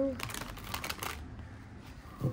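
A deck of tarot cards shuffled by hand: a quick run of papery flicks lasting about a second, then quieter handling of the cards.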